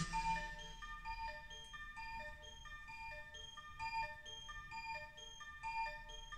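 Breakdown in an early-90s rave track from a DJ mix: the bass and drums drop out at the start, leaving a quiet melody of short, evenly spaced synth notes with no beat.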